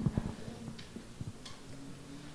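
Laughter dying away at the start, then a few faint, scattered clicks and taps in a quiet room over a low, steady hum.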